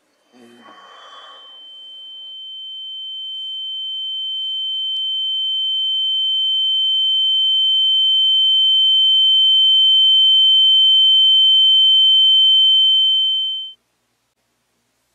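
A single high-pitched electronic ringing tone, an ear-ringing sound effect, swelling steadily louder for about twelve seconds and then cutting off suddenly near the end. A brief rustle of movement comes just as the tone begins.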